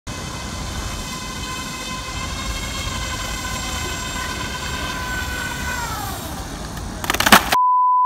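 Whine of a radio-controlled ground effect model's motor and propeller running at steady speed on the water, then falling in pitch as the throttle comes off about six seconds in. Near the end, a short loud burst of hiss, then a steady high test-card beep.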